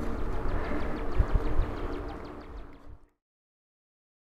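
Wind buffeting the microphone and tyre noise from a fat-tyre e-bike ridden along a paved street under pedal power, its battery flat and the motor silent, with a fast light ticking over the top. The sound fades out about three seconds in.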